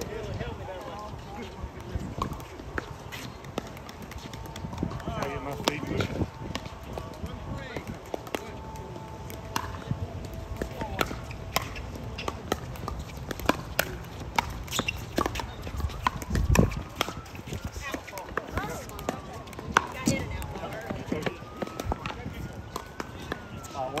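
Pickleball paddles hitting a plastic ball: many sharp, irregular pops from this and the neighbouring courts, over players' voices. Near the end a distant siren glides up and down.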